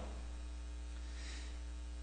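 A steady, low electrical hum with a faint hiss: mains hum picked up in the recording.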